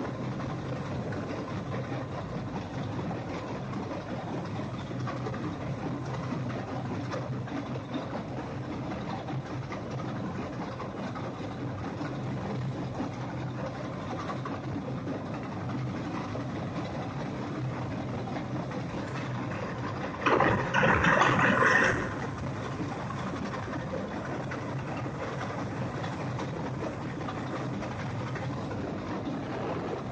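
Tesmec TRS1675 track trencher's diesel engine running steadily under load, with a low hum, while its toothed digging chain grinds through gravelly rock. About twenty seconds in, a loud harsh burst lasts under two seconds.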